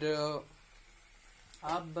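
Mostly speech: a drawn-out spoken word, then a pause with only a faint sizzle from the chicken and potatoes frying in the pan, and talk resumes near the end.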